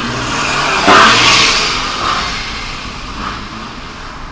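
Road vehicle passing close by: a loud rush of engine and tyre noise that swells to a peak about a second in, then fades away over the next two seconds.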